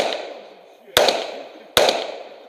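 Semi-automatic pistol fired twice from the shooter's position, about a second in and again near the end, each sharp shot followed by a fading echo; the echo of a shot just before is still dying away at the start. A short laugh and a curse come between the shots.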